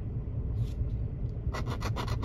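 A large coin scraping the coating off a scratch-off lottery ticket's number spot: one faint stroke early, then from about a second and a half in a quick run of short, rapid strokes. A low steady rumble sits underneath.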